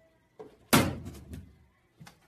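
A plastic storage bin thrown onto a classroom floor: one loud bang under a second in, followed by a short rattling clatter that dies away.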